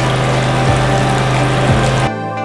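Water running from a chrome pillar tap into a ceramic wash basin, a steady rush that starts suddenly and cuts off suddenly.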